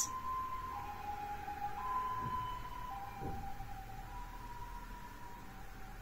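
Faint two-tone siren, a high and a low note taking turns about once a second.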